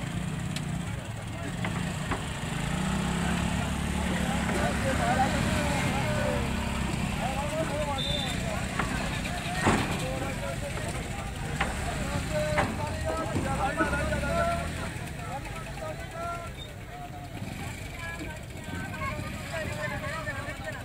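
Motorcycle engines running at low revs amid the overlapping chatter of a crowd, the engine hum strongest in the first half, with a single sharp knock about halfway through.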